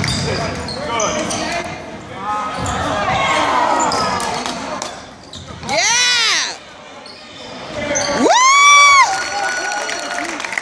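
Basketball being dribbled on a hardwood gym floor amid players' sneakers squeaking and background chatter in the gym. Two sharp sneaker squeaks stand out, one about six seconds in and a louder, longer one near the end.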